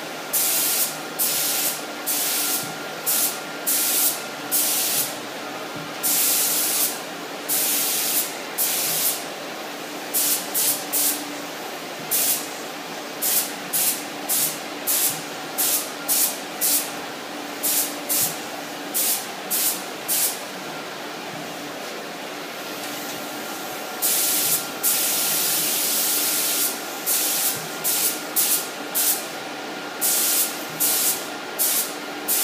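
Air-fed paint spray gun laying down base coat, its trigger pulled and released in many short bursts of hiss, with a longer pass near the end. A steady hum runs underneath.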